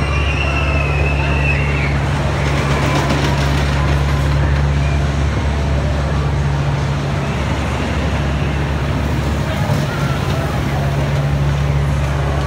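Diesel engine of a one-third-scale miniature railway locomotive running at a steady low drone as the train rolls along, with the rumble of wheels on the track, heard from the carriage close behind.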